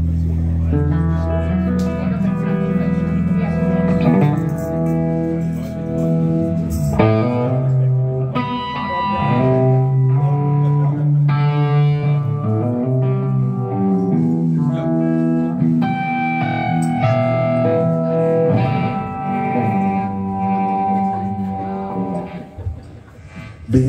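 Live rock band playing an instrumental intro: electric guitar playing held chords and single-note lines over bass, with a long low note underneath for about the first seven seconds.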